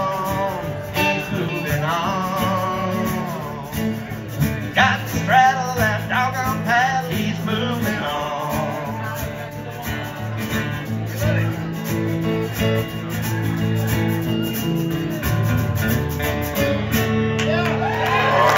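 Country band playing an instrumental passage: dobro slide lines gliding over electric guitar, with a steady washboard rhythm.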